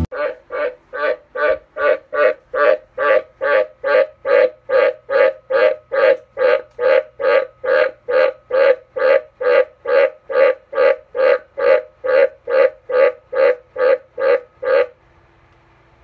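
A White's tree frog (Australian green tree frog) calling, a low croak repeated steadily about twice a second, some thirty times over. The calls stop about a second before the end.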